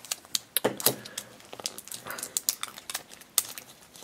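Fingers handling a plastic surprise egg and peeling its clinging plastic wrap: a run of small, irregular plastic clicks and crinkles.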